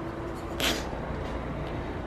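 Hands handling a taped-together metal exhaust pipe: one brief scuff a little over half a second in, over a low steady hum.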